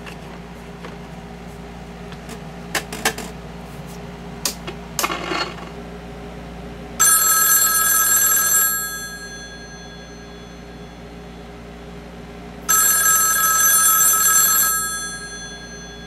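Rotary desk telephone bell ringing twice, each ring about two seconds long, with about four seconds between them, and a few faint clicks before the first ring. The Ansafone KH-85 answering machine, set to auto-answer, does not pick up; the owner suspects a sticking relay.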